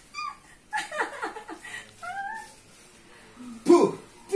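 A woman's short, high-pitched rising cries of pain, twice, as pressure is applied to her feet during pressure-point massage, with a loud vocal outburst near the end.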